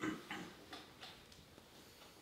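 A few faint, irregularly spaced clicks with a soft rustle at the start, against quiet room noise.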